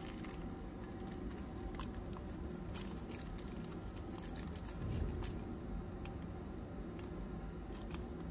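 Faint crinkling of a small plastic zip-lock bag and light ticks as sulfur powder is tapped out of it into the plastic scoop of a digital spoon scale, over a steady low hum. A soft low thump about five seconds in.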